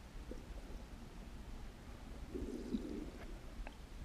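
Muffled underwater ambience picked up by a GoPro in its waterproof housing: a steady low rumble with a few faint clicks, and a short muffled low sound a little past the middle.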